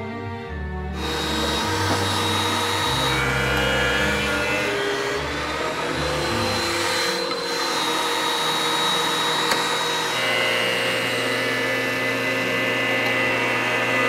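Benchtop thickness planer running steadily, over background music with a bass line.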